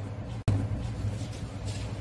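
Steady low background hum with faint noise between spoken answers, broken by a brief dropout at an edit about half a second in.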